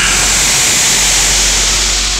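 Loud, steady rushing hiss of a dramatic film sound effect over a close-up. It cuts in abruptly and holds evenly, with no pitch or rhythm.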